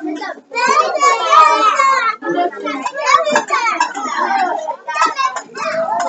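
Young children's voices chattering and calling out, one voice loudest about half a second to two seconds in.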